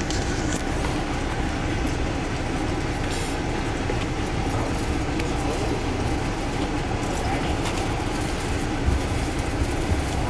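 Amtrak passenger train running, heard from inside the coach: a steady rumble of wheels on the rails and the car body, with no break.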